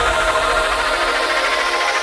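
Electronic background music in a build: held synth tones with the bass cut out and a faint rising sweep above them.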